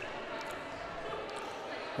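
Steady background noise of an indoor basketball hall, with faint distant voices.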